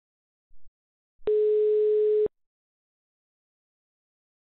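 A telephone ringback tone on a phone line: one steady, single-pitched beep about a second long, the ringing an outgoing call makes before it is answered. A faint click comes just before it.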